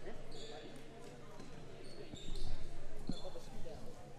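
Crowd chatter in a school gymnasium, with a basketball bouncing on the hardwood court and several short high squeaks; one thump stands out about three seconds in.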